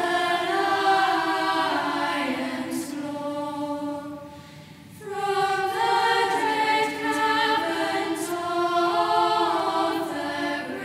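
A choir singing slow, sustained chant-like music, several voices holding long notes together and moving between them, with a short break in the phrase about halfway through.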